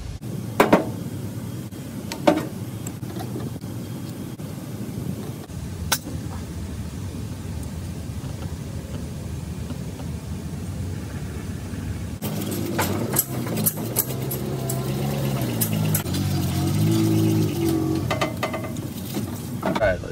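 Metal carburetor parts clicking a few times as they are handled and taken apart over a steady low background. From about halfway through, a louder engine-like drone with a wavering pitch builds up.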